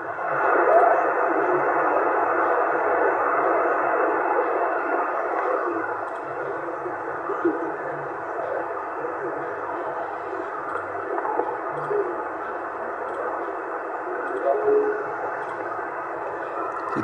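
Yaesu FT-450 transceiver receiving upper sideband on the 27 MHz CB band: steady band-limited static hiss with a weak voice barely breaking through, a distant station too weak to copy.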